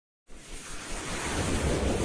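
A rushing whoosh sound effect for an animated logo intro, starting about a quarter second in and swelling steadily louder.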